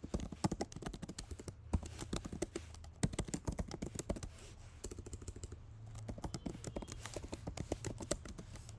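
Typing on a computer keyboard: quick runs of key clicks with short pauses between them, over a steady low hum.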